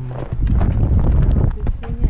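Wind buffeting a helmet-mounted action camera's microphone in a steady low rumble, with irregular knocks and rustles from the camera and clothing moving.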